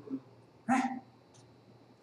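Only speech: a man's single short exclamation, "Hein?", a little under a second in, with low room tone around it.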